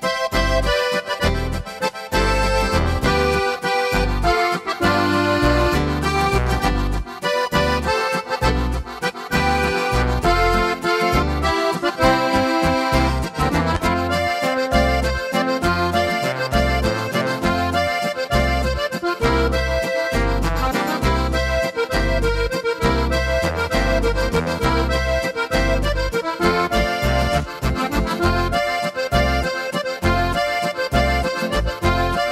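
Oberkrainer waltz played on a Korg Pa5X Musikant arranger keyboard: an accordion voice over the style's automatic band accompaniment, with a steady oom-pah bass.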